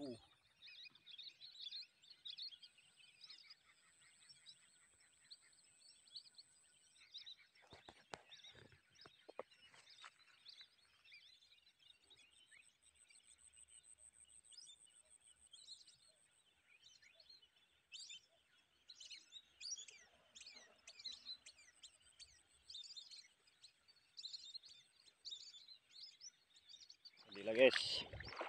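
Faint bird calls over a flooded rice field: many short chirps and whistles running on throughout, with a thin high steady whistle heard twice and a few soft knocks about eight to ten seconds in.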